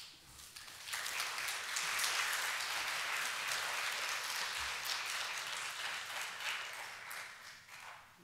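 Audience applauding, starting up about a second in and dying away near the end.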